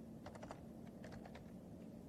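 Faint typing on a computer keyboard: a quick run of key clicks in the first second and a half, over a low steady room hum.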